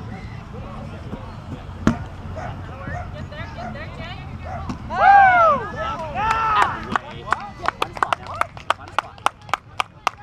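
A rubber kickball struck once with a sharp thwack about two seconds in. Players yell twice a few seconds later, then there is a quick run of sharp handclaps, several a second, near the end.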